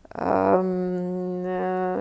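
A woman's voice holding a long hesitation sound, a drawn-out 'eee' on one steady pitch for nearly two seconds, breaking off at the end.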